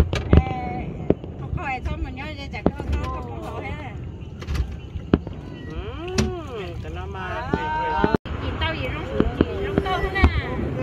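Aerial fireworks going off in separate booms and cracks at irregular intervals, the loudest about half a second in. People's voices call out and exclaim between the bursts, and the sound cuts out for an instant near the eighth second.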